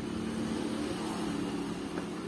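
Steady low mechanical hum of an engine running in the background, one pitched line in it fading out near the end.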